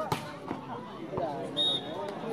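A volleyball struck hard by a player's hand in a jump serve: one sharp slap just after the start, over crowd chatter. Near the end comes a short high whistle blast.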